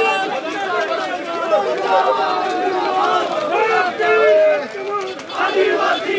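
A dense crowd of men talking and shouting over one another at close range, many voices overlapping.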